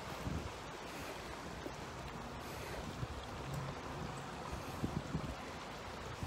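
A steady, faint rush of wind on the microphone and flowing river water, with a few soft knocks.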